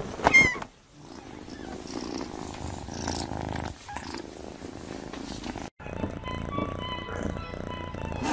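A kitten purring, a low, even rumble that begins about a second in and stops suddenly at a cut near six seconds. After the cut, quiet music with steady held tones.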